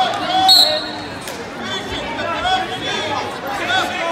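A referee's whistle blown once, short and shrill, about half a second in, starting a wrestling bout. Spectators shout and chatter all around in a large, echoing gym.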